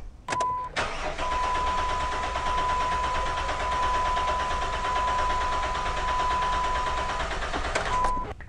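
Engine cranking over on its starter motor for about seven seconds, steady and even, with a steady high-pitched tone over it. The engine is being cranked to check that compression has returned after the broken valve spring that caused the cylinder 1 misfire was replaced.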